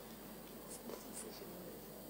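Low room tone of a large chamber, with a few faint, brief scratchy sounds about a second in.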